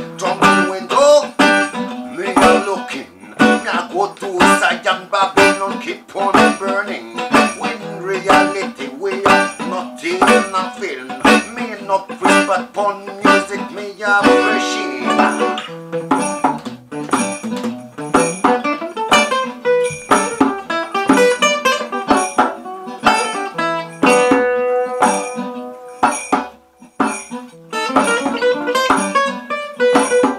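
Acoustic guitar strumming and picking a rhythmic roots-reggae groove, with a hand drum played along, in an instrumental passage between sung verses.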